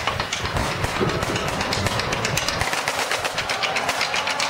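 Marching band drumline playing a street cadence: rapid, evenly repeated strokes on Pearl marching snare drums with bass drums underneath. The bass drums fade out a little past halfway.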